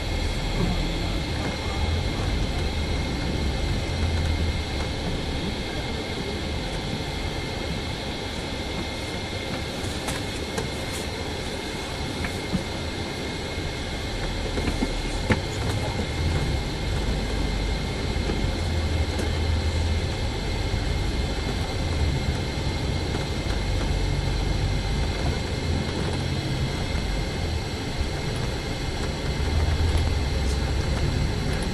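Interior noise of a bus driving through town streets: the engine's low rumble swells and eases as it pulls away and slows, under a steady faint high whine, with a couple of small clicks or rattles midway.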